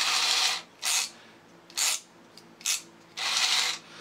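A single small motor and plastic gear train in a ratchet-modified Tomy Dingbot toy robot whirring in five bursts as it is driven forward in spurts. The first and last bursts are the longest, with three short ones between.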